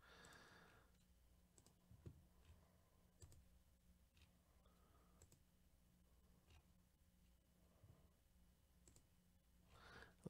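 Near silence broken by faint, scattered computer mouse clicks, over a faint steady low hum.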